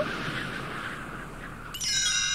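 A soft hiss fades away, then near the end a bright bell-like chime rings out suddenly and keeps ringing: the read-along cassette's signal to turn the page of the book.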